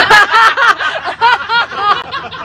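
A person laughing in quick, repeated high-pitched bursts, tailing off near the end.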